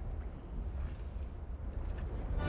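Low, steady wind rumble on an outdoor microphone, with faint open-air background noise.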